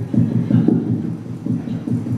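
A man's rapid, heavy panting blown straight into a handheld microphone, about four or five rumbling puffs a second, acting out the strain of heavy lifting.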